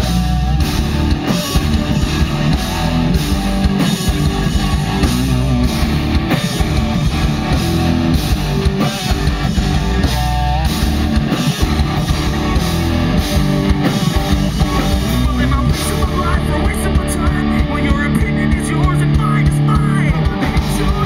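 Live punk rock band playing loud through the stage PA: distorted electric guitars, bass guitar and a drum kit keeping a steady fast beat.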